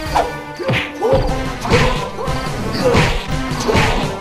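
Dubbed fight sound effects: a rapid series of about seven punch and whoosh hits, each a sudden blow with a short falling sweep, over background music.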